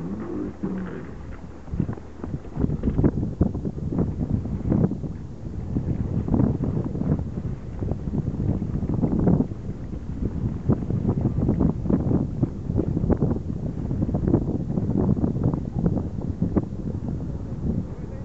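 Wind buffeting the microphone in irregular gusts, a rough low rumble throughout.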